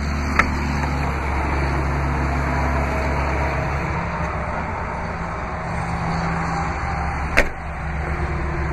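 Jeep Liberty's flip-up liftgate glass released with a short click of its latch, then shut with a single sharp knock near the end. A steady low rumble runs under it.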